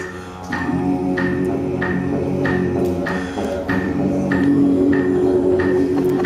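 Vocal beatboxing into a microphone, a didgeridoo-like droning hum under a steady beat that falls about every two-thirds of a second, played as a musical interlude between sung lines.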